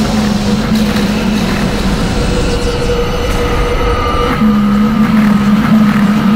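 Dramatic soundtrack sound design: a loud low rumble under sustained droning tones, with one held low note dropping out after about two seconds and returning about four and a half seconds in.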